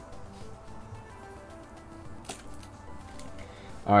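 Quiet background music playing under light handling sounds of cards and a foil booster pack, with one sharp click a little past two seconds in.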